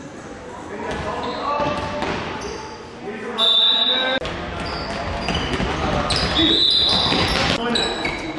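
A referee's whistle blast, loud and steady, about three and a half seconds in, and possibly a second one later, over the shouting of young players and spectators in a sports hall. A handball bounces on the hall floor in sharp knocks.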